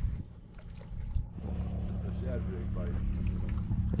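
A boat's motor running with a steady low hum that sets in about a second and a half in.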